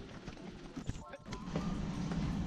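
Faint knocks and clicks of a house door being pushed open and passed through, with a few soft creaks just after a second in.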